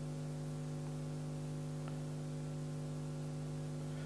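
Steady, quiet electrical mains hum picked up by the lectern microphone's sound system: a low buzz with several steady tones stacked above it and no other sound.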